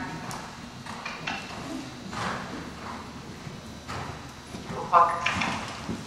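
Hoofbeats of a horse moving over soft dirt arena footing, coming as faint, irregular thuds. A voice is heard briefly near the end.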